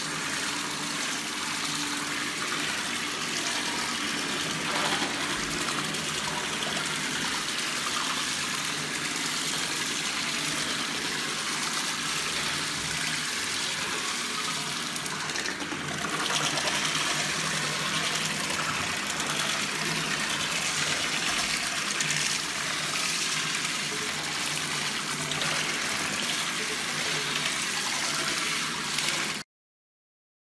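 Water running steadily from a tap into a bathroom sink, a little louder about halfway through, then stopping suddenly near the end.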